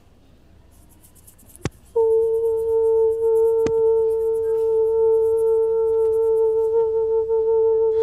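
A woman's voice holding one steady sung tone for about six seconds, starting abruptly about two seconds in after a sharp click and wavering slightly near the end: vocal toning in a light-language meditation.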